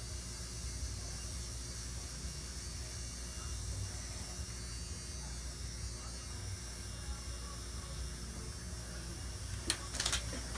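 Steady low electrical hum with a faint hiss: room tone, with one sharp click near the end.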